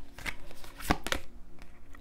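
Oracle cards being handled: cards slid from the deck and laid down on a table, with a few sharp card snaps and slides, the loudest about a second in.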